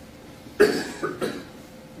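A person coughing: one sharp cough about half a second in, followed by two lighter ones.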